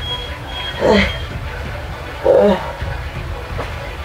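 A woman's short pained groans, twice: once about a second in and again a little after two seconds, over a steady low background rumble.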